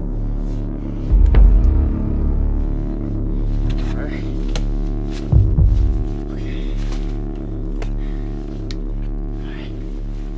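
Dark, tense film score: a steady sustained drone with two deep low hits, about a second in and about five seconds in.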